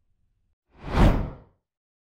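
A single whoosh transition sound effect about a second in, swelling and fading within under a second.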